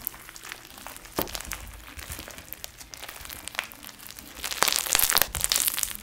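Crunchy foam-bead slime squeezed and kneaded by hand, the beads crackling and snapping in quick scattered clicks. The crackling comes thicker and louder in the last second and a half.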